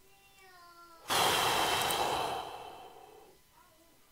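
A man's long, heavy sigh close to the microphone, starting suddenly about a second in and fading away over two seconds. Before it, and faintly again near the end, a small child's high voice babbles.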